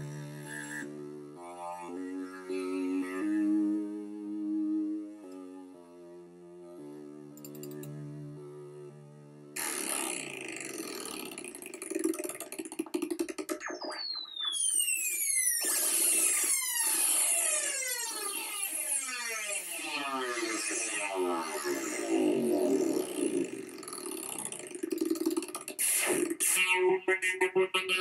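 Access Virus TI synthesizer played by hand movements in front of a camera: a string of held notes stepping up and down in pitch. About ten seconds in, it turns suddenly to a brighter, noisier sound with repeated falling pitch sweeps. A short laugh comes near the end.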